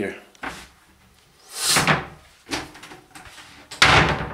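Wooden built-in wardrobe doors being handled and shut: a brief swish about halfway through, a few light knocks, then a sharp clack of a door near the end.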